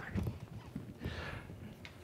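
Faint, irregular soft knocks with a brief rustle about a second in: handling and movement noise during the changeover between two presenters.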